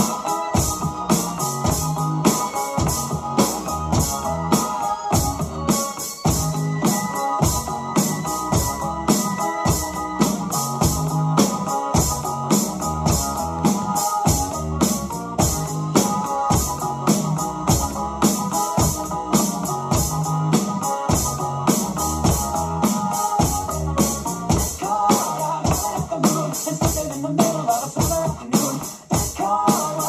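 Electronic drum kit played along with an electronic dance backing track: a steady fast beat of drum hits under a synth keyboard melody.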